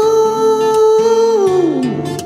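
A man's singing voice holds one long note of a ballad, then slides down in pitch near the end, over a backing track with guitar.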